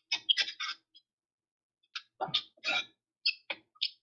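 Handling noise from a phone camera being moved and set up: short rustles and clicks in two clusters, one in the first second and one in the last two seconds. The sound comes through a video call, with dead silence between the bursts.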